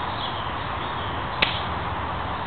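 A single sharp knock, about one and a half seconds in, over a steady background hiss.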